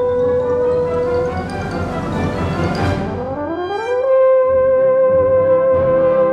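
Swiss military wind band playing a concert piece, with a long held high note over the full ensemble. About three seconds in, the line glides upward into a louder held note.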